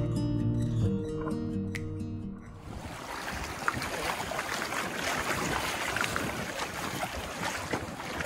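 Acoustic guitar music that fades out about two and a half seconds in, followed by the steady rush of a river flowing around the legs of a wading angler, with a few faint splashes.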